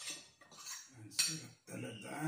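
Metal spoon and fork scraping and clinking against a plate while eating. There are several short strokes, the sharpest about a second in.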